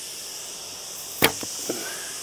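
A single sharp crack of an arrow being shot from a laminated Mongolian Yuan-style horse bow, about a second in, with a short ringing tail. A steady high hiss runs underneath.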